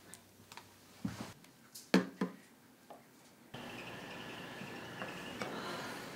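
A few light clicks and knocks, the sharpest pair about two seconds in, over quiet room tone. After about three and a half seconds the background abruptly changes to a steady, louder hiss.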